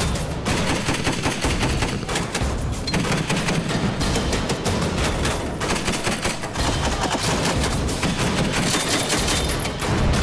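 Rapid, continuous firing of a Mk 19 40 mm automatic grenade launcher, one shot closely following another, mixed with background music.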